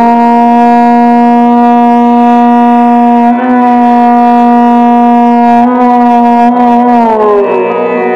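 Violin playing Raga Shyam Kalyan in Hindustani classical style: long bowed notes held for a few seconds each, joined by smooth slides up and down between pitches.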